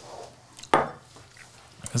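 A tasting glass set down on the bar top: a single short knock about three-quarters of a second in.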